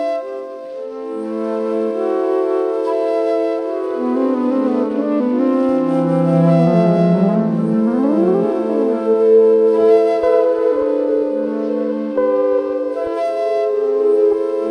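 Ambient improvised music: flute over layered, looped electric-guitar soundscapes. Many sustained tones overlap and drift, and in the middle several pitches slide up and down across each other.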